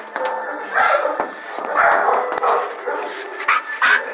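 A dog barking several times in short bursts.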